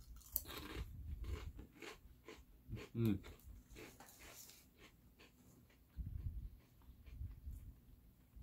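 Crisp crunching as a thin Cheez-It Snap'd cheese cracker is bitten and chewed, a run of sharp crackles that die away after about four and a half seconds.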